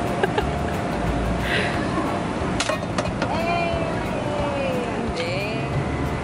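A few sharp clicks over a steady rumble of outdoor background noise, then a child's voice sliding down in pitch and back up through the second half.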